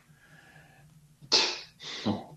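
Two short, sharp breaths from a person, the first about a second in and the louder of the two, the second weaker just before the end.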